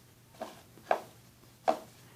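Hard plastic drinking cups knocking lightly on a table as they are moved and set down: two short separate knocks, and a third short sound near the end.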